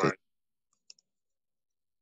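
A man's voice finishes a word at the very start, then near silence broken by a couple of faint, short clicks a little under a second in.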